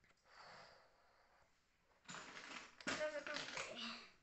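A person's voice: a breathy hiss lasting about a second near the start, then about two seconds of voiced sound in the second half with no clear words.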